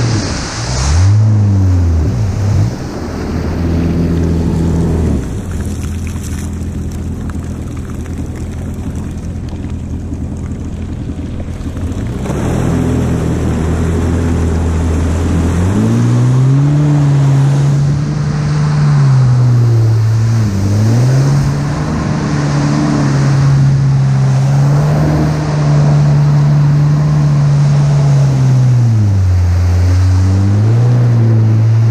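Jet ski engine running under way with the hiss of spray and wind. Its pitch dips and rises in the first few seconds, holds steady and lower, then climbs to higher revs about halfway through as the throttle opens, with brief dips around 20 s and near the end.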